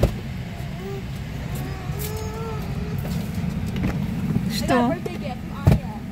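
Car cabin rumble, steady and low, with a sharp knock at the very start and another a little before the end. Faint voices come and go, with a short spoken burst about three quarters of the way through.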